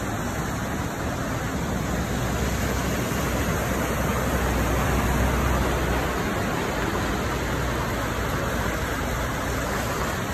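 Floodwater flowing across a street and washing over a brick-paved sidewalk: a steady rushing of water with a low rumble underneath that swells a little around the middle.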